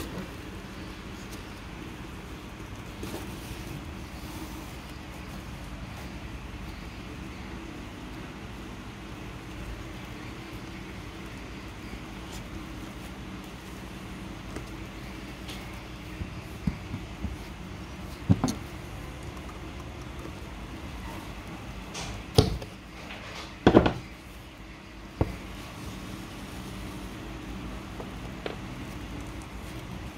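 Steady low room hum. In the second half come a handful of short knocks and rustles as the sailcloth, the metal sail slider and the needle are handled during hand sewing.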